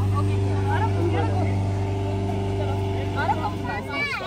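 Petrol-engine balloon inflator fan running at a steady, even hum, blowing cold air into the flat hot air balloon envelope. The hum fades away near the end.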